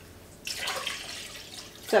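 Water running from a kitchen tap, a faint, even hiss that starts about half a second in.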